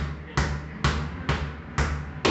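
A soccer ball bounced on a tiled floor in a steady rhythm, about two bounces a second, each a thud with a short ringing tail. It is part of a run of seven bounces played as a percussion pattern.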